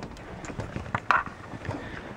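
Handling noise from the camera-mounted leaf blower as it is moved: light clicks and knocks, with one brief louder sound about a second in. No steady blower noise is heard.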